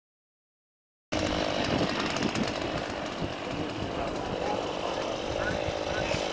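Outdoor sound on a camcorder microphone, starting abruptly about a second in after silence: rough, rumbling noise typical of wind buffeting the microphone, with voices in the background.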